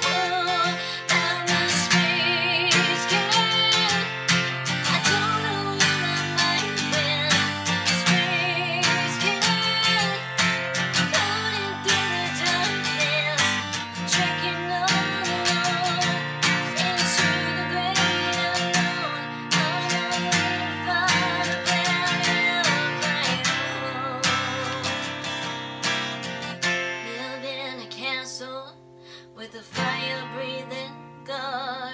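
An acoustic guitar strummed steadily in chords, with a woman singing over it in a wavering voice. The playing thins out and gets quieter near the end.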